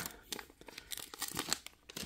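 Foil trading-card booster pack being torn open and crinkled by hand: a string of faint, irregular crackles.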